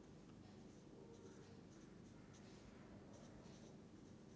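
Faint scratching of a felt-tip marker writing on paper, in a series of short strokes, over a low room hum.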